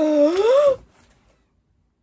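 A woman's high-pitched squeal of delighted shock, under a second long, rising in pitch.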